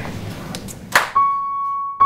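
A wallet dropping onto the floor with a single sharp thud about a second in, followed straight away by one held high note of music that rings on.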